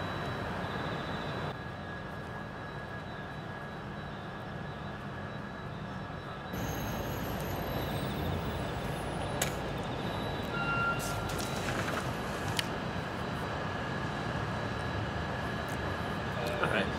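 Wind on the microphone, a steady rushing noise that drops a little about a second and a half in and comes back up about six and a half seconds in, with a few faint clicks.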